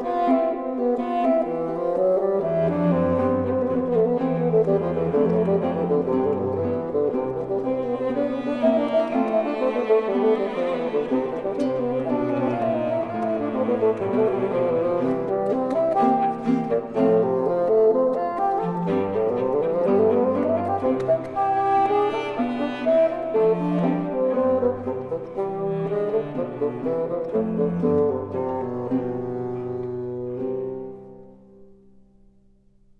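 Bassoon with cello and guitar accompaniment playing a movement of a 19th-century bassoon sonata at a moderate tempo, one melodic line over a steady bass and accompaniment.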